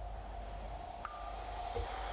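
A sustained synthesized tone held on one pitch, with a short higher tone joining about a second in.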